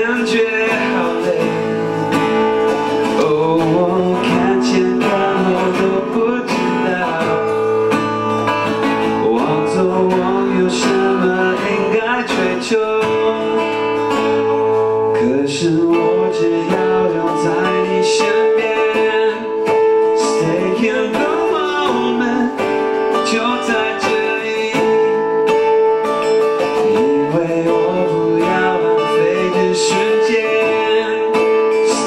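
Live acoustic band music: strummed acoustic guitar with singing, over one steadily held note.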